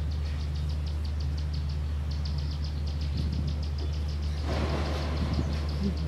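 Steady low hum of a running motor, even in pitch throughout, with a fast, high pulsing ticking of about ten beats a second over it. A broader hiss joins about four and a half seconds in.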